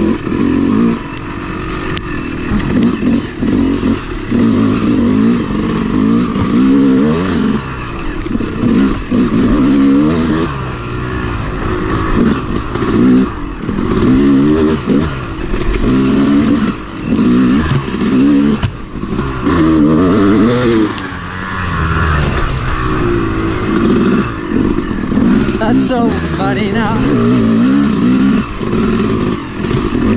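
Yamaha 250 two-stroke dirt bike engine revving up and down as it is ridden along a trail, its pitch rising and falling every second or two with throttle and gear changes.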